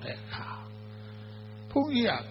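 Steady electrical mains hum on a microphone line. A man's voice trails off at the start and comes back in near the end.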